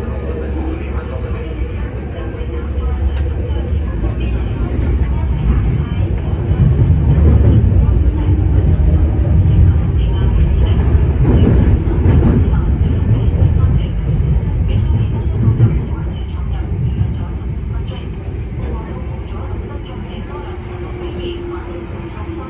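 A Kinki Sharyo/Kawasaki-built MTR Tuen Ma line train running, heard from inside the car: a low rumble of wheels on rails that swells to its loudest in the middle and then eases off as the train approaches its terminus, with a steady tone near the end.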